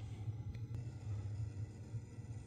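Quiet room tone: a faint steady low hum, with one faint short click about three-quarters of a second in.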